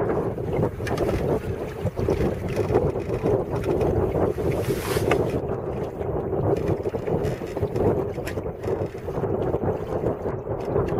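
Wind buffeting the microphone over the steady rush and slap of water along the hull of a small sailing duckpunt under way downwind, with a brief louder hiss about halfway through.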